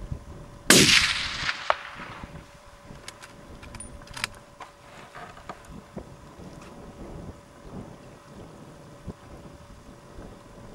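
A single rifle shot about a second in, its report rolling away over the hill. About a second later comes a short sharp 'toc', the sound of the bullet striking the hind, which tells that the shot is well placed. A few faint clicks follow.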